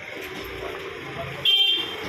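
A vehicle horn sounds once, a short honk about a second and a half in, loud over the background murmur of voices and street noise.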